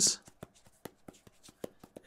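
Thumb rubbing and pressing on a tempered glass phone screen protector, faint, with a few small ticks spread through it.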